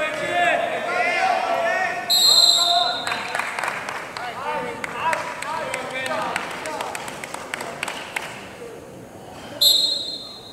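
Wrestling referee's whistle, one blast lasting about a second about two seconds in and a short one near the end, over shouting from the crowd and coaches.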